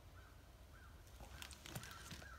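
Near silence, with a few faint, short bird chirps repeating about every half second.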